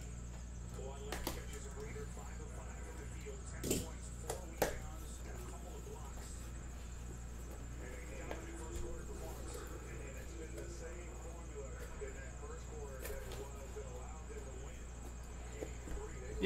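Cardboard case being handled and opened: a few short knocks and rustles about a second in and again around four seconds in, over a steady low electrical hum.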